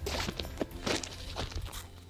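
Several footsteps of a person walking, short separate steps that grow fainter toward the end.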